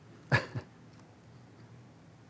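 A short cough, two quick bursts close together about a third of a second in, over a quiet room hush.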